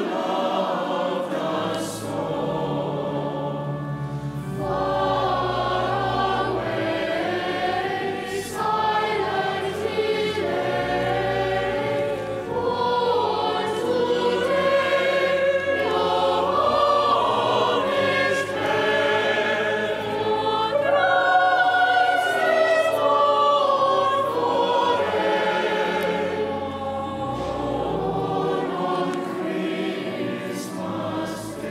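A choir of children and teenagers singing a Christmas carol in parts, over sustained low pipe-organ notes.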